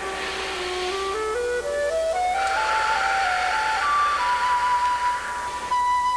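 Soft instrumental background music: a single flute-like melody climbs slowly in small steps to a long held high note, then starts to step back down near the end.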